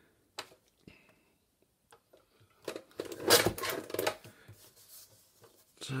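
A sheet of paper being handled and slid about on a paper trimmer's base: a few faint clicks, then about two seconds of rustling and scraping near the middle.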